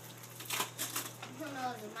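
Packing tape and wrapping paper being torn and peeled off a cardboard gift box: a quick run of rustling, ripping sounds about half a second in, with a voice starting near the end.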